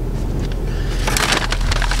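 Paper fast-food bags rustling and crinkling as they are handled, starting about halfway through.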